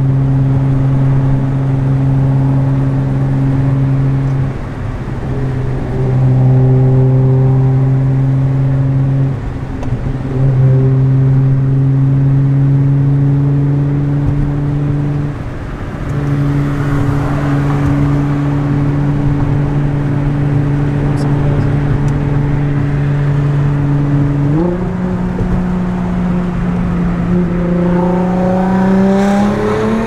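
Nissan GT-R R35's twin-turbo V6 heard from inside the cabin, cruising with a steady drone that dips briefly a few times. About 25 seconds in its pitch steps up, then rises steadily near the end as the car accelerates.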